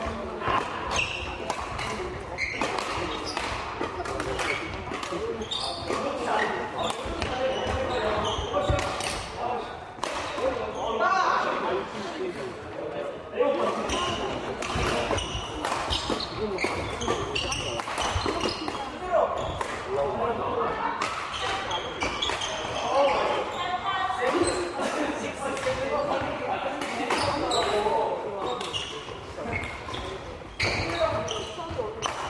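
Badminton rackets striking shuttlecocks: sharp cracks at irregular intervals throughout, ringing in a large, echoing sports hall, with voices chattering.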